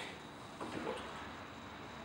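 Quiet workshop room tone, with one short spoken word a little under a second in; no tool or machine sound.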